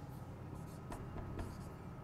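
Marker pen writing on a whiteboard: a run of short, faint scratching strokes.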